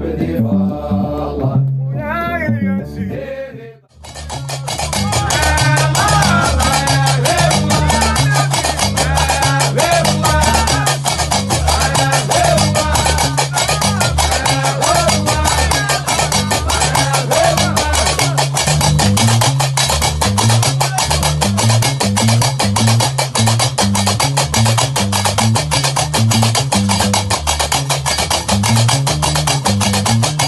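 Gnawa trance music: a chanted vocal that breaks off about four seconds in, then a new piece starts with a guembri bass line, a fast steady clatter of qraqeb iron castanets and a man singing over them.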